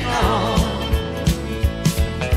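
A country song recording: a sung note trails off near the start, then the band carries on with a steady drum beat.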